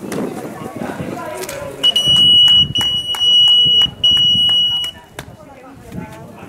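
A shrill, steady high-pitched tone sounding twice, first for about two seconds, then again for about a second, over rhythmic clapping of about three to four claps a second, greeting a runner arriving at the finish. Voices are heard just before it.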